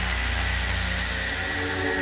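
Beatless passage of an electronic trance track: a steady low buzzing drone under hiss and a thin high steady tone, with no drums.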